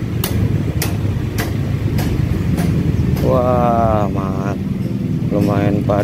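Motor scooter running at low speed, a steady low rumble of engine and road noise, with a light click repeating a little under twice a second through the first half.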